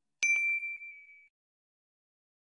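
Notification-bell sound effect from a subscribe animation: a single bright ding that rings and fades over about a second, with a couple of faint clicks at its start.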